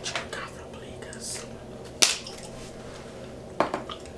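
Close-miked bubble gum chewing with a few sharp pops and clicks, the loudest about two seconds in and a quick pair near the end, and a brief crinkle of a gum wrapper just after a second in.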